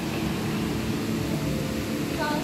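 Steady rushing background noise with a low hum underneath.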